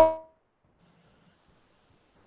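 A voice holds out the end of a word and breaks off about a quarter second in. The rest is near silence: a pause in the conversation with only faint room tone.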